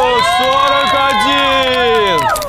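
Several young women cheering and shrieking together in long, held, high voices, a cheer for a completed set of push-ups.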